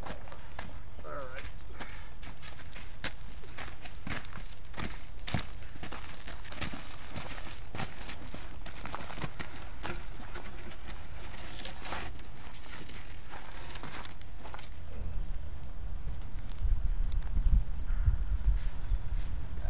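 Irregular crunches and knocks of footsteps and shovels working coarse sand and gravel as a heavy wooden post is handled and set in its hole. A low wind rumble on the microphone comes up near the end.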